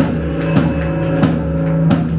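Live rock band playing: guitars hold a steady chord while the drum kit strikes about every two-thirds of a second.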